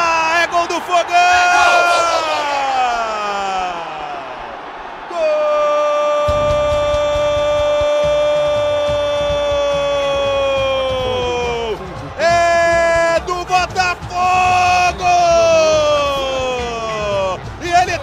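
A radio football commentator's drawn-out goal shout, the voice held on long sustained notes for many seconds: a first shout falling in pitch, then one very long near-steady note, then further long cries after a brief break.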